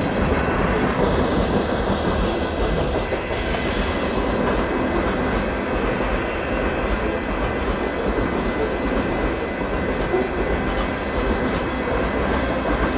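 Freight train of hopper cars rolling past at a grade crossing, a steady noise of wheels on rail throughout.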